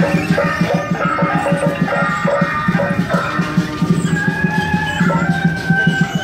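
Traditional temple procession music: a fast, steady drumbeat under a melody of held notes that step from pitch to pitch.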